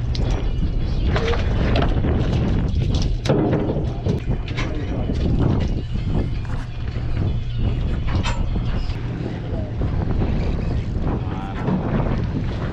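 Steady low drone of a fishing boat's engine, with wind on the microphone, indistinct voices and scattered knocks on deck.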